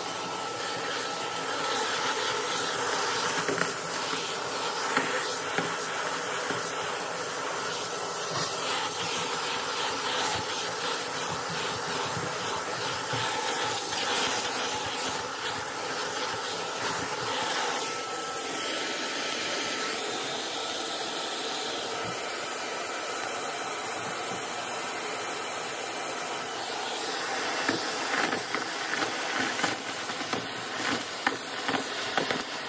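Shark DuoClean vacuum running with its crevice tool, a steady whine of motor and suction whose thin tone drops out about two-thirds of the way through. Near the end come a run of sharp clicks as small debris such as sequins and craft scraps is sucked up the tool.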